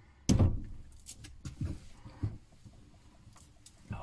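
A greenhouse door being shut: one loud bang about a third of a second in, followed by a few lighter knocks and clicks.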